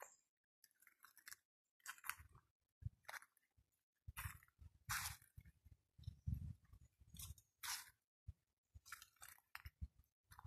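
Footsteps crunching through dry leaf litter on a forest track at a walking pace: irregular crunches, some with a dull low thud underfoot.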